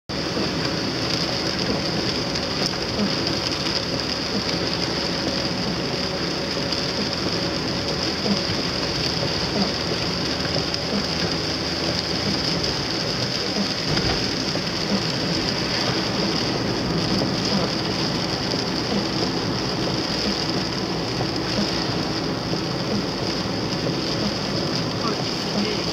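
Heavy rain hitting a moving car's windshield and body, mixed with steady engine and wet-road tyre noise, heard from inside the cabin. The noise is constant hiss throughout.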